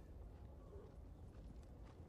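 Near silence: quiet room tone with a low hum and a few faint knocks near the end.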